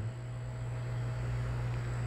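Room tone: a steady low hum with a faint, even hiss.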